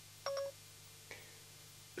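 iPhone 4S Siri start-listening chime: a short two-note electronic beep, sounded as Siri's microphone button is tapped, signalling that Siri is ready for a spoken question. A fainter brief blip follows about a second later.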